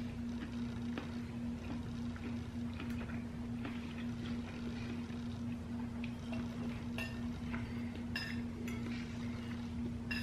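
Quiet room with a steady low hum, and a few faint, short clicks of metal forks touching plates, scattered through.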